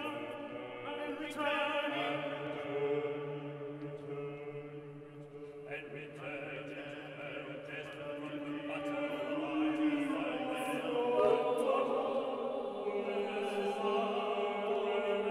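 Vocal ensemble singing slow, sustained chant-like chords over a held low note in contemporary choral music. It dips quieter about five seconds in, then swells louder towards the end.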